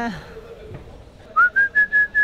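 A single high whistled note begins just over a second in, sliding up slightly and then held steady.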